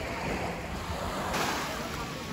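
Small waves breaking and washing up a pebbly shoreline, with wind buffeting the microphone; one wash swells a little louder shortly after halfway.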